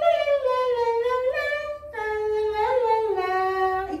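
A woman humming a slow wordless tune in two long phrases, the notes sliding from one pitch to the next, with a short break about halfway.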